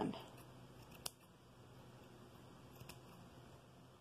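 Scissors snipping through a yarn pompom to trim it round: a few faint, separate snips, the clearest about a second in.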